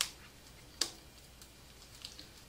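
Rubber band snapping twice as it is stretched and wrapped tight around the gathered ends of rolled cloth: two sharp snaps under a second apart.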